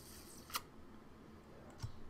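Computer keyboard keystrokes: one sharp key click about half a second in and a couple of faint clicks near the end, over low room tone.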